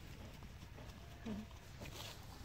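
Footsteps on a dirt track with wind rumbling on the microphone. A brief low-pitched sound, the loudest thing, comes a little past halfway.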